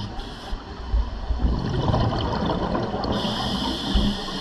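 Scuba regulator breathing heard underwater. A short inhale hiss ends right at the start, a gurgling rush of exhaled bubbles follows from about a second and a half in, and another inhale hiss begins near the end.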